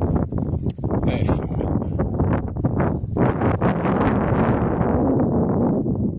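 Wind buffeting the microphone: a loud, gusting rumble with some rustling on top.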